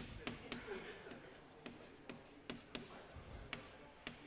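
Chalk writing on a blackboard: faint, irregular sharp taps and short scratches as letters are written, several a second.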